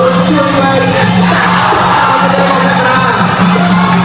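Traditional Khmer ring music for a Kun Khmer bout: a wailing reed-pipe melody bending up and down over a steady low drone.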